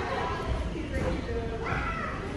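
Indistinct voices in a large gym hall, with a high-pitched voice rising in pitch near the end, over a steady low rumble.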